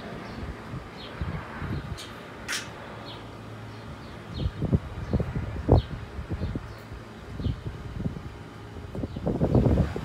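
Low, steady rumble of a Bombardier Challenger 300 business jet passing over on approach, broken by gusty thumps on the microphone around the middle and near the end. A bird chirps faintly over and over in the background.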